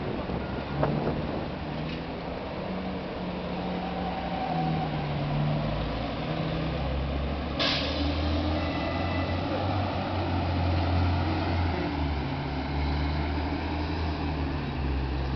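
City road traffic on a wet avenue: cars and buses passing with a steady rumble and tyre noise. A deep engine drone grows louder in the second half, and there is a brief sharp noise about halfway through.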